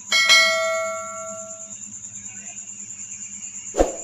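Notification-bell 'ding' sound effect of a subscribe-button animation: one bright bell chime just after the start, ringing out over about a second and a half. A short low thump comes near the end, over a steady faint high whine and low hum.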